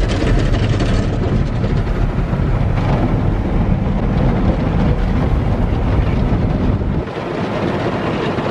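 Automatic car wash heard from inside the car's cabin: water spray and brushes washing over the windows and body make a loud, steady rush with a deep rumble. The rumble drops away about seven seconds in.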